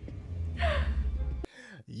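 A sharp gasp over a low rumble in the film's soundtrack; the rumble cuts off suddenly about one and a half seconds in.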